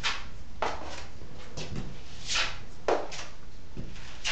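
A 6-inch drywall knife spreading joint compound over a taped bevel joint: about six short scraping strokes, roughly one every half second to second.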